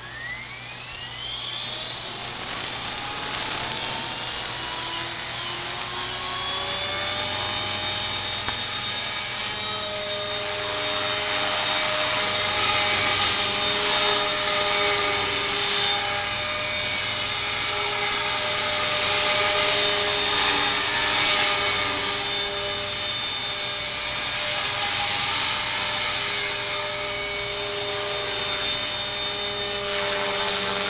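Align T-Rex 450 SE V2 electric RC helicopter spooling up. Its motor and gear whine rises steeply in pitch over the first few seconds, then settles into a steady high whine with rotor noise as it flies, the pitch wavering slightly.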